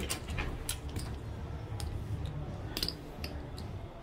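Casino chips clicking against each other as the blackjack dealer takes them from the chip tray and stacks them to pay a winning bet: scattered sharp clicks, with a quick run of them near the end.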